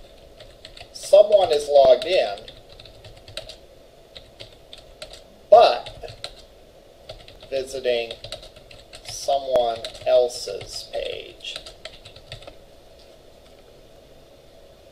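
Computer keyboard typing in quick runs of key clicks as a line of code comment is entered, with a voice speaking a few short phrases in between.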